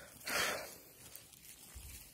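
A brief rustle of moss and pine needles, about half a second long, as a hand works a young porcini out of the forest floor.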